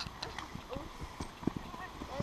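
Faint footsteps of a person running on grass toward the camera, as a series of soft, irregular low thuds, with faint distant voices.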